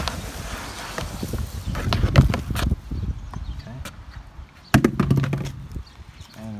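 Old dead plants and soil being handled and dropped into a plastic tote compost bin: irregular rustling, crackling and knocks, loudest about two seconds in, with another burst near the end.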